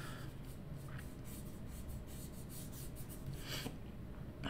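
Colored pencil scratching across paper in short, quick shading strokes, with a slightly louder stroke near the end.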